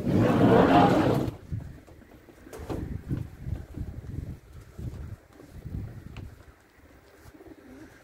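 Pigeons cooing, faint and irregular, after a loud rush of noise in the first second or so.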